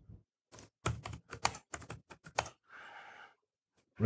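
Typing on a computer keyboard: a quick run of about a dozen keystrokes over roughly two seconds, entering a short search query.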